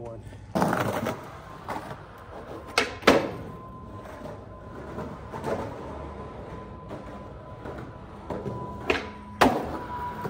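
Skateboard wheels rolling on rough concrete, with sharp clacks of the board: two close together about three seconds in and two more near the end.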